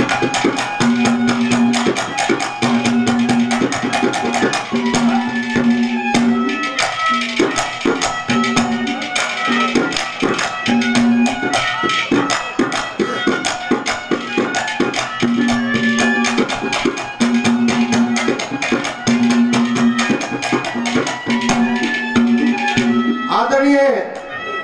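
Live instrumental music: a melody of held notes over a fast, steady hand-drum rhythm in the style of a tabla.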